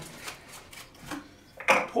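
A run of light plastic clicks and taps, about three or four a second, as a nutrient bottle and a small plastic mixing cup are handled on a wooden workbench.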